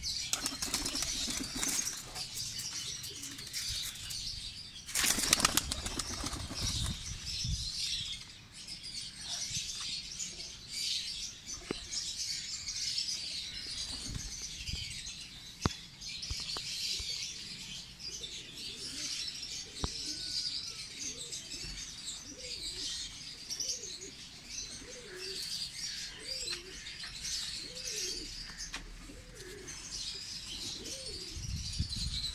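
Teddy and Salara pigeons flapping their wings on a loft perch, in two flurries, the louder about five seconds in. From about twenty seconds on, pigeons coo repeatedly over a steady high chirping of small birds.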